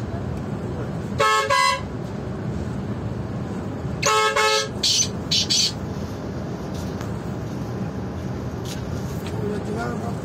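Coach horn sounding over the steady rumble of the moving bus: a short double blast about a second in, then a longer blast about four seconds in, followed by three short hissing bursts.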